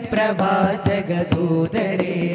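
A group of voices singing a devotional song in unison, with short, sharp percussive beats keeping time.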